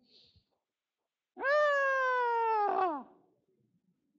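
A man's voice imitating a newborn baby's first cry: one high, drawn-out wail lasting about a second and a half, starting about a second and a half in and slowly falling in pitch.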